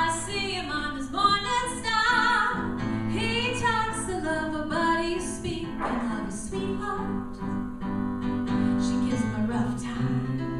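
A woman singing a song live, accompanied by acoustic guitar and keyboard.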